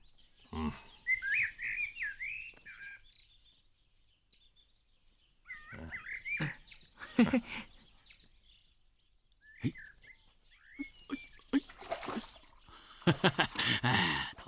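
A songbird chirping in short, quick, warbling phrases, heard three times: about a second in, around six seconds, and again near ten seconds.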